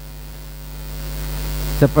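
Steady electrical mains hum in a pause of speech, with a hiss that grows louder through the second half; a man's voice comes back just before the end.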